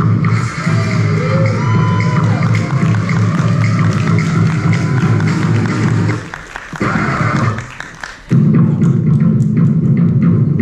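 Loud stage-show music with a heavy, driving bass beat. The bass drops out twice in quick succession, about six and seven and a half seconds in, then comes back in full.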